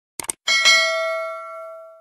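Subscribe-button animation sound effect: a quick double click, then a notification bell chime that dings and rings out, fading over about a second and a half.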